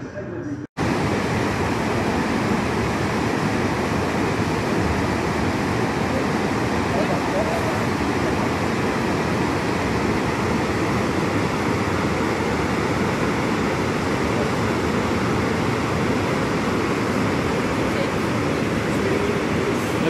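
The Rhine Falls rushing: a loud, steady roar of falling white water heard close by. It cuts in abruptly after a brief gap less than a second in.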